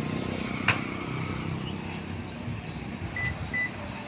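Outdoor street ambience with a steady low traffic rumble, a sharp click a little under a second in, and two short high beeps a little after three seconds in.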